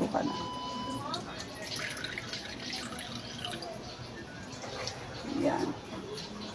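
Vinegar poured from a plastic pouch into squid and sauce in a wok, then a wooden spoon stirring and clicking against the pan.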